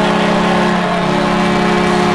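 Arena goal horn sounding one long, steady, loud blast over a cheering crowd, signalling a home-team goal.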